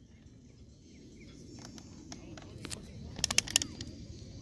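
Outdoor ambience of a youth soccer match: faint, distant players' and spectators' voices over a low steady background noise, with a quick run of sharp clicks about three seconds in.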